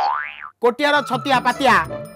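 A comic 'boing' sound effect: one whistle-like note sliding up and back down in pitch over about half a second, followed by a man speaking.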